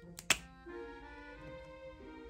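Plastic cap pulled off an alcohol-ink marker: a quick double click about a third of a second in, the second one sharp and loud, over background music.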